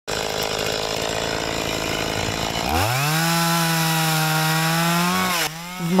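Chainsaw running, then revving up quickly to a steady high pitch about three seconds in and holding it, dropping off shortly before the end.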